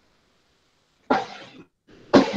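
A single short cough about a second in, sudden and fading quickly.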